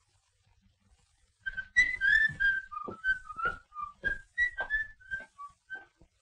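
A person whistling a tune in short, separate notes that move up and down in pitch, starting about a second and a half in.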